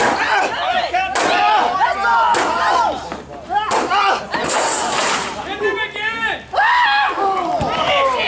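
Staged combat: several sharp clashes of weapons, mostly in the first half, amid fighters' shouts and crowd voices.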